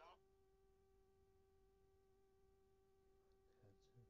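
Near silence, with a faint, steady electrical tone holding one pitch and its overtones throughout.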